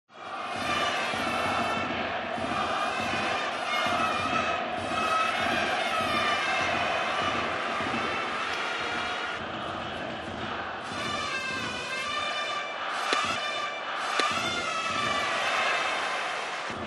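Baseball stadium crowd with a cheering section's brass music playing short repeated phrases. Two sharp cracks come about a second apart near the end.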